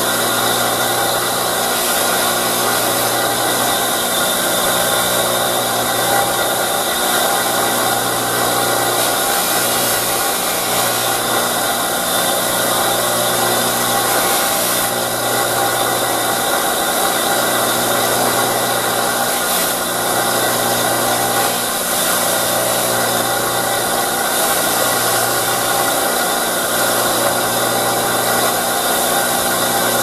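Old bench buffer's electric motor running steadily with a hum and whirr, its buffing wheel spinning while a small nickel-plated screw is held against it for polishing.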